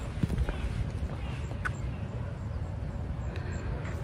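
Outdoor ambience with a steady low rumble and a faint distant shout, which might have been someone yelling 'jump'.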